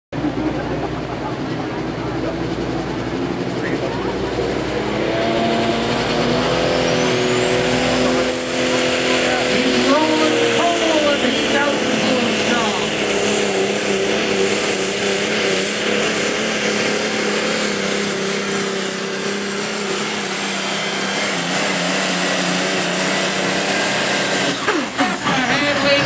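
Dodge Ram pickup's Cummins straight-six diesel at full throttle pulling a weight-transfer sled, engine running loud and steady. A high turbocharger whistle climbs steeply a few seconds in and then holds high.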